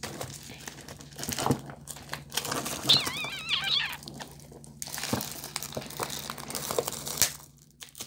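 Clear plastic shrink-wrap crinkling and crackling irregularly as it is tugged and peeled off a spiral-bound notebook. About three seconds in, a short wavering high voice-like sound.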